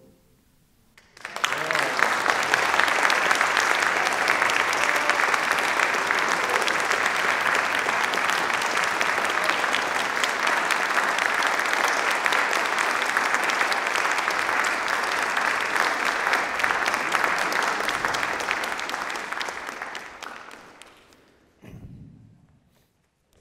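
Audience applauding, starting about a second in and fading out near the end.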